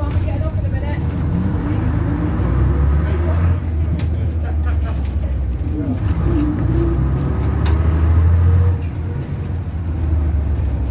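Leyland Panther single-decker bus's diesel engine pulling steadily as the bus drives along, heard inside the saloon, its note gliding up and down a few times in the middle.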